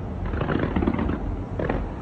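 Fireworks going off in a dense, continuous rumble of bangs, with a few sharper reports about half a second, just under a second and about 1.7 seconds in.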